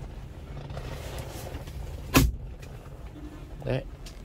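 A single sharp knock about two seconds in, over a low steady rumble inside a parked car's cabin.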